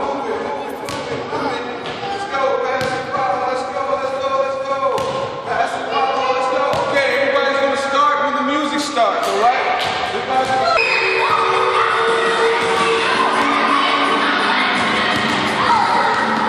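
Rubber playground ball bouncing on a hard gym floor, a series of sharp bounces at irregular intervals, over children's voices echoing in the hall.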